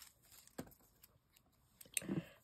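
Faint rustling and light ticks of small paper labels and stickers being sorted by hand on a table, with the sharpest tick near the end.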